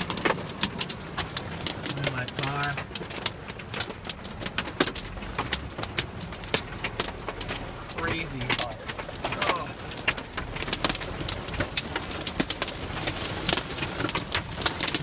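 Heavy rain and hail drumming on a car's roof and windshield, heard from inside the car as a dense, irregular patter of sharp taps.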